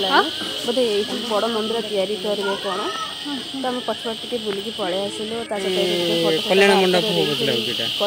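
People talking, over a steady high-pitched insect buzz.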